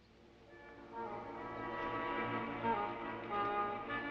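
Orchestral background music fading in from near silence, rising over the first second into held notes.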